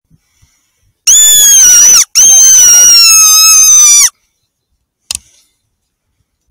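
A fox lure call (squeaker) sounded twice: two long, high-pitched squeals, back to back, each sliding slightly down in pitch, used to draw a fox in. A short click follows about five seconds in.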